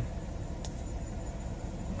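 Chrysler Intrepid V6 engine idling steadily at about 720 rpm, heard from inside the car.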